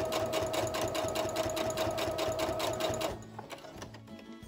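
Electric sewing machine stitching along a folded fabric strip at a steady speed: a rapid, even ticking of needle strokes over a steady motor whine, stopping about three seconds in.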